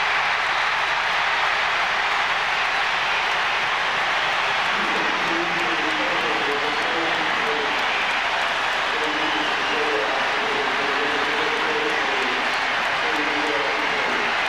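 Large stadium crowd cheering and clapping steadily, celebrating at the final whistle. From about five seconds in, voices rise out of the crowd.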